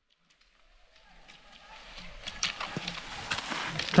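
Skate skis scraping on packed snow and ski poles planting with sharp clicks as cross-country skiers pass close by, fading in from silence over the first second or two.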